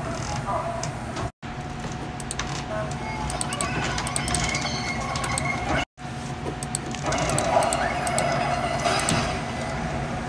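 Animated-film soundtrack played from a TV and picked up by a nearby microphone: character voices and music over a busy bed of effects. The sound drops out completely for a split second twice, about one and a half and six seconds in, where clips are spliced together.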